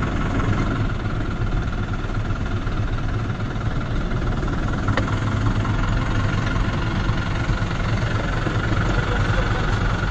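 Steady low rumble of vehicle engines idling, with one sharp click about halfway through.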